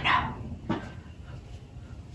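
A woman's short, breathy snickering: a huff of breath that fades, then one brief falling "heh" about two-thirds of a second in.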